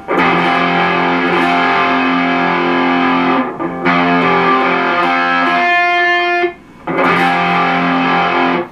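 Distorted electric guitar, an Epiphone Flying V in drop D tuning, playing a heavy chord barred at the third fret. The chord is struck three times and left to ring each time, with short breaks between.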